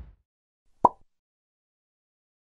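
A single short, sharp pop sound effect from an animated channel outro, about a second in, followed by a faint tick. The tail of a low whoosh fades out at the very start.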